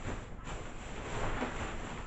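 Rustling and shuffling as shopping bags of thrifted items are grabbed and moved about.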